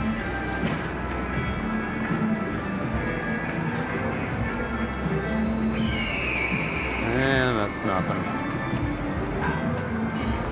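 Buffalo Ascension video slot machine playing its free-games bonus sounds as the reels spin: looping game music with galloping hoofbeat effects. A falling tone comes about six seconds in, and a short wavering call follows a second later.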